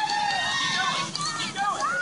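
Several children shouting and calling out at once in high voices, overlapping one another.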